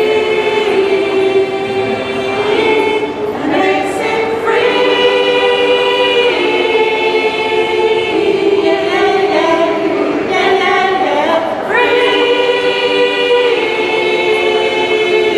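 Choir singing a slow song in sustained chords, the notes held for a second or two before moving to the next.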